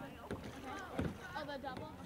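Canoe paddles dipping and splashing on calm water, with people's voices talking and a single sharp knock about a second in.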